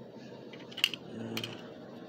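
Two sharp clicks about half a second apart, over faint room noise.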